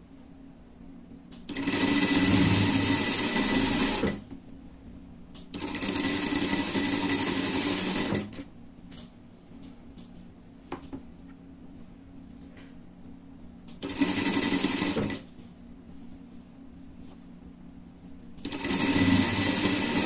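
Straight-stitch sewing machine stitching in four separate runs of one to three seconds, each a steady whir, stopping between runs. It is sewing a rib-knit cuff onto a fleece sleeve.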